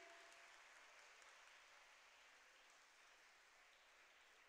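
Faint applause from an audience, an even patter that slowly dies away.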